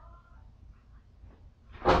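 Quiet room tone, then near the end a sudden loud shout breaks in.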